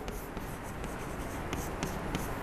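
Chalk writing on a blackboard: faint scratching with a few light taps and clicks of the chalk as a word is written.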